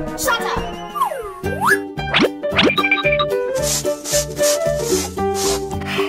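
Upbeat children's background music with a steady beat, overlaid with cartoon sound effects in the first three seconds: one long falling pitch glide, then several quick rising ones.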